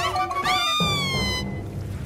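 A cartoon cat character's high-pitched cry that jumps up and then falls away, starting about half a second in and trailing off by about a second and a half, over cartoon background music that drops to a quieter bass line partway through.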